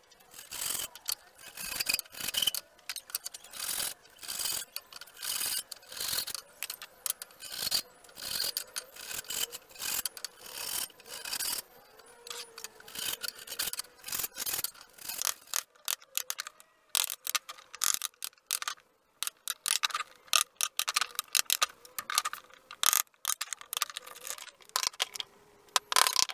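Hand saw cutting wood in steady back-and-forth strokes, about one and a half a second. In the last several seconds the strokes turn shorter and more irregular.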